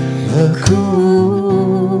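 A man's wordless humming-style vocal line into the microphone over acoustic guitar, long held notes sliding between pitches, with a guitar strum about two-thirds of a second in.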